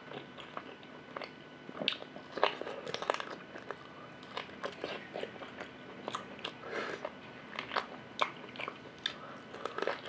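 Close-miked chewing and biting of beef ribs eaten by hand, a string of irregular sharp mouth clicks and smacks with no steady rhythm.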